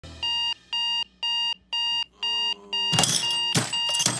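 Digital alarm clock beeping, a high electronic tone repeating about twice a second. About three seconds in, loud knocks and rattles come in over it as a hand gropes across the bedside table at the clock.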